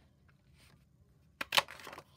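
Hand-held Stampin' Up whale paper punch cutting a fin shape from white cardstock: two sharp clicks about a second and a half in, the second the louder, as the punch is pressed through the paper, then a brief rustle.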